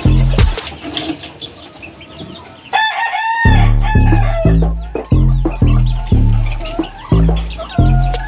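A gamefowl rooster crows once, about three seconds in, with a call lasting a second or two. It is heard over hip-hop music with a heavy, repeating bass beat, which is the louder sound.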